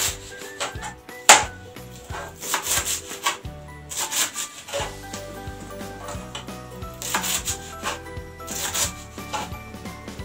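Knife chopping fresh coriander on a plastic chopping board: uneven strokes and scrapes of the blade against the board, one sharp knock about a second and a half in, with background music underneath.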